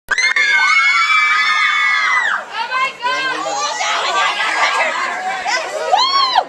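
A crowd screaming in high voices, many long overlapping screams for about two seconds, then breaking into a jumble of shouts, cheers and excited chatter.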